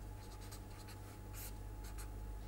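Marker pen scratching across paper in a series of short writing strokes, the loudest about one and a half seconds in, over a faint steady electrical hum.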